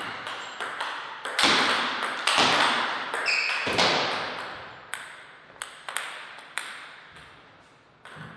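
Table tennis ball knocked back and forth in a rally: sharp clicks of racket hits and table bounces, the harder shots echoing off the hall. After about four seconds come lighter, spaced clicks as the dead ball bounces away.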